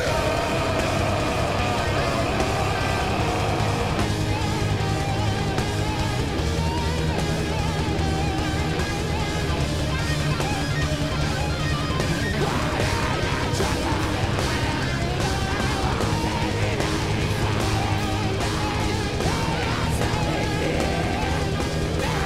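Live metalcore band playing at full volume without a break: distorted electric guitars, bass guitar and drums.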